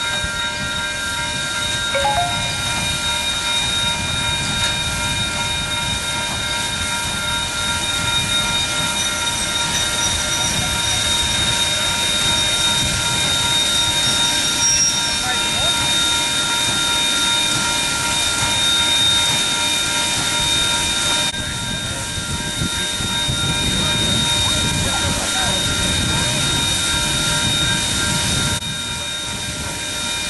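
A New Zealand Ja class steam locomotive, number 1271, standing with steam hissing and a set of steady high whining tones held throughout, under a low murmur of crowd chatter.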